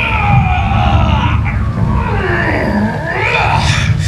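Water-show soundtrack over outdoor loudspeakers: a long sweeping sound effect that glides down in pitch for about two and a half seconds, then swoops back up near the end, over a steady low rumble.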